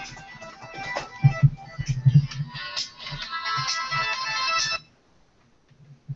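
A mobile phone's melodic ringtone playing, then cutting off abruptly about five seconds in as the call is answered.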